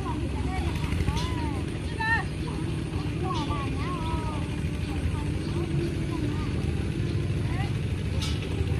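A small engine running steadily throughout, with voices calling and talking across the fields over it, mostly in the first half.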